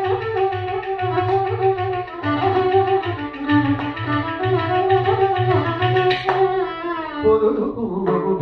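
Carnatic violin playing a melodic passage in raga Sankarabharanam with sliding ornaments, over a regular beat of low drum strokes.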